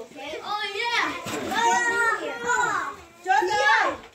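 Children playing and calling out in high voices, several at once, with a brief lull about three seconds in.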